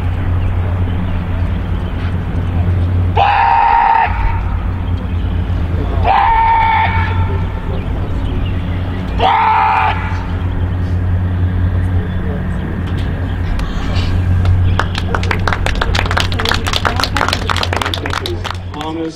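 A handler's voice shouting three loud commands about three seconds apart, each under a second long, over a steady low rumble. Near the end comes a fast run of sharp clicks.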